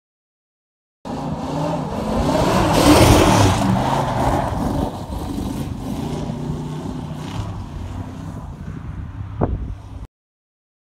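A car engine revving hard while the car spins its wheels and slides through snow. It starts suddenly about a second in, is loudest a couple of seconds later, then runs on more steadily, with a short sharp burst near the end.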